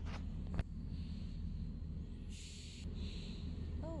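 Steady low hum inside a passenger train carriage, with a sharp click about half a second in and a short hiss a little after halfway.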